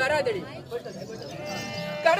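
A performer's voice singing a wavering, quavering line in the sung dialogue of Tamil therukoothu street theatre. A steady held instrumental note comes in near the end.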